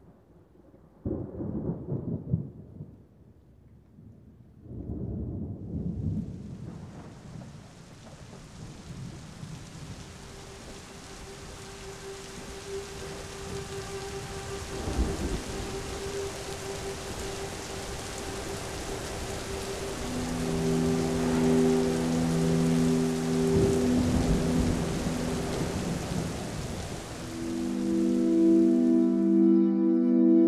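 A thunderstorm: thunder rumbles twice in the first few seconds, then steady rain sets in and grows louder, with further low rolls of thunder. A held low musical drone enters under the rain and swells into sustained chords near the end.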